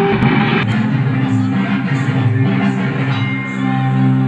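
Recorded music for a dance: a song with plucked-string instruments and held notes playing steadily.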